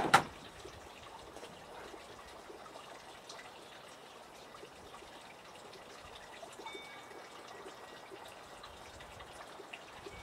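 Faint, steady outdoor background noise, like trickling water, after one short, sharp knock right at the start.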